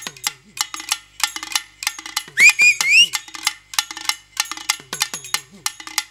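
Stage drum accompaniment: a steady rhythm of sharp clicking strokes mixed with deep hand-drum strokes that drop in pitch. A brief high-pitched vocal yelp comes a little after halfway.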